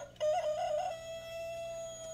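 A rooster crowing once: a few short broken notes, then one long held note that drops off at the end.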